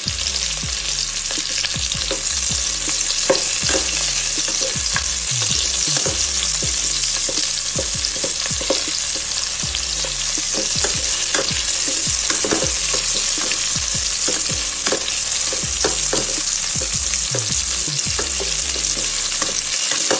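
Sliced onion and garlic sizzling in a little hot oil in a stainless steel pot, with a steady loud hiss. A spatula stirs them, scraping and clicking against the pot many times.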